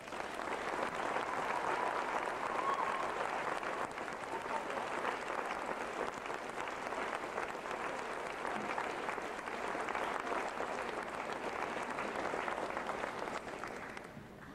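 Audience applauding steadily after a concert band piece ends, dying down near the end.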